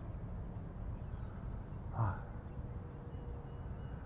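Outdoor ambience of a steady low rumble, like wind on the microphone, with faint bird chirps. A man gives a short grunt about two seconds in.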